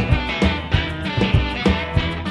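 Chicago blues band playing an instrumental passage with no vocal: electric guitar and bass over a drum kit keeping a steady beat of about three strokes a second.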